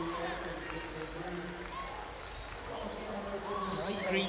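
Indistinct voices over the steady hum of an indoor swimming arena.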